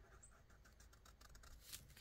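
Near silence, with faint scratching of a thick black marker drawing along the edge of a paper page.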